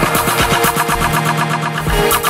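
Deep house / afro house dance music from a DJ mix, with a steady beat and a held low bass note. The kick drum drops out about a second in and comes back near the end.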